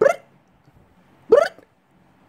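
A baby hiccuping twice, about a second and a half apart, each hiccup a short high-pitched squeak.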